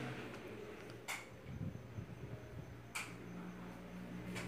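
Quiet room tone with two short, sharp clicks, one about a second in and one about three seconds in.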